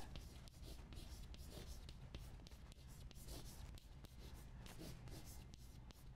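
Chalk writing on a blackboard: a faint, irregular run of small taps and scratches as the chalk strokes out words.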